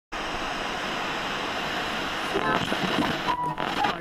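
Radio static hiss, as of a radio being tuned between stations; from about halfway in, snatches of voices and a short steady tone break through the static.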